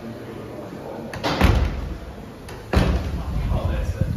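Doors banging shut twice, about a second and a half apart, each a sudden thud that fades quickly; the second is sharper.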